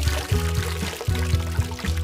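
Background music with a steady bass beat, over which water splashes at the surface as a fish thrashes.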